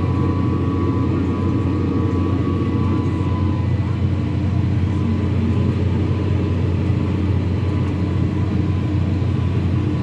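Case IH tractor's diesel engine running steadily under load while pulling a disc harrow through clover, heard from the cab as a constant low drone. A faint higher whine fades out about three and a half seconds in.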